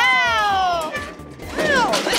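A long, excited exclaimed "wow" falling in pitch, over background music. A second, shorter falling glide follows near the end.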